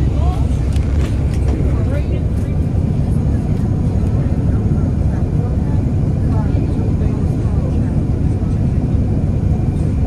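Inside a moving city bus: a steady low engine and road rumble, with faint voices of other passengers now and then.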